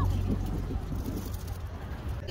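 Background guitar music fading out, leaving a low, uneven rumble of outdoor background noise.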